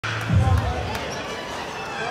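Dull thumps echoing in a large gymnasium about a third of a second in, over a background murmur of voices.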